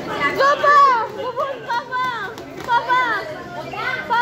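A group of young children shouting and chattering excitedly, many high voices overlapping.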